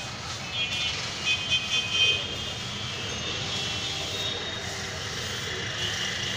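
Dry pigeon-feed grains (maize, peas and wheat) rustling as a hand stirs through the pile, over a steady background rumble. A few faint high steady tones sound in the first two seconds.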